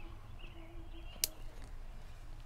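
A single sharp click of a lighter a little past halfway through as a tobacco pipe is relit, over faint bird chirps.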